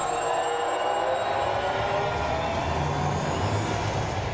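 Sustained synthesized drone from a logo sting: several steady tones held together over a noisy hum, with a low rumble growing stronger in the second half.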